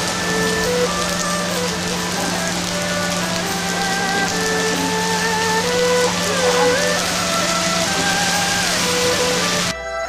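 Steady heavy rain falling on the street, with a slow traditional Chinese melody on a bowed erhu, its notes sliding between pitches, playing over it. The rain cuts off suddenly just before the end while the music goes on.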